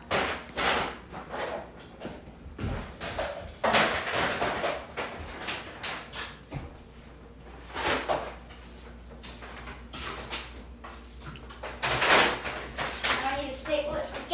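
Irregular handling noises: knocks and rustles as plastic Play-Doh tubs are picked up off a table and put into a paper grocery bag.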